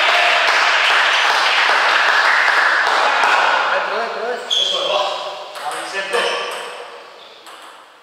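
Voices in a sports hall, loud at first and dying away, with a few sharp taps of a table tennis ball in the second half.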